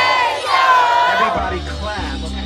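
A crowd of children and adults yelling together in long, high cries over backing music. The music's bass drops out for the first second and a half, then comes back in.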